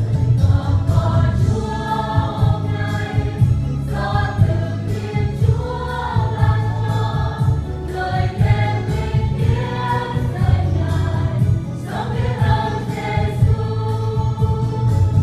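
Mixed choir of women and men singing a Vietnamese Christian song together over an accompaniment with a strong bass line and a steady beat.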